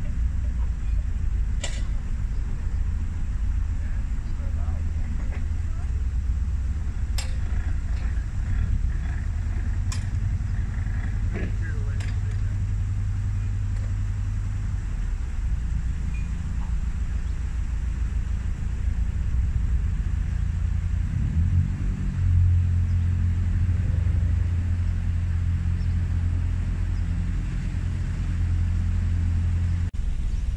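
Narrowboat's inboard diesel engine running with a steady low throb, growing louder about two-thirds of the way through. A few sharp clicks come in the first half.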